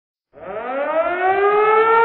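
A siren winding up: it starts about a third of a second in, its pitch rising steeply and then levelling off into a loud, steady wail.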